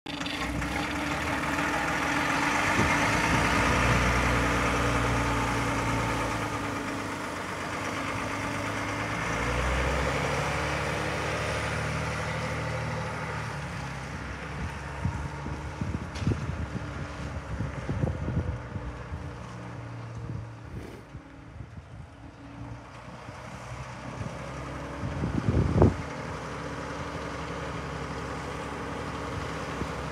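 Volvo FL6 fire truck's turbocharged, intercooled diesel engine running. It is loudest at first, fades as the truck moves off into the distance, then grows louder again as the truck comes back. A brief loud burst comes a few seconds before the end.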